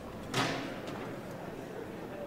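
Low murmur of an audience and performers between pieces, with one sharp knock or thud about half a second in.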